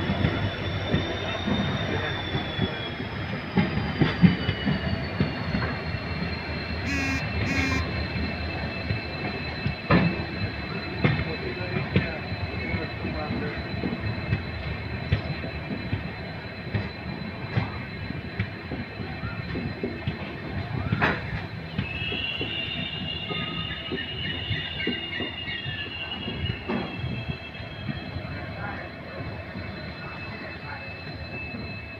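Express train's passenger coach running along the track, heard from an open door: a steady rumble of wheels on rail with a few sharp knocks from rail joints, and a high, thin wheel squeal that slides down in pitch early on and then holds steady.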